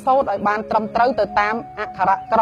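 A man speaking Khmer in a continuous talk, with a faint steady hum underneath.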